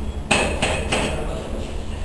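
Three sharp knocks in quick succession with a short ringing clink, the first loudest: ceramic tile being tapped into its mortar bed while it is set.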